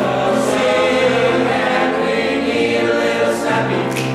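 Teenage men's choir singing sustained chords in harmony, with piano accompaniment, and a single sharp clap from the singers near the end.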